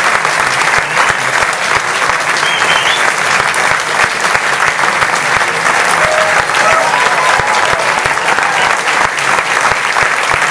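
Audience applauding: dense, steady clapping, with a few faint voices calling out from the crowd.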